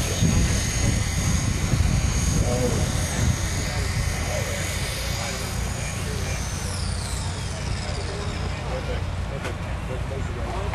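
Hornet Micro miniature unmanned helicopter hovering with a steady high-pitched rotor whine over a low rumble. About seven seconds in, the whine falls in pitch as the craft sets down and its rotor spins down.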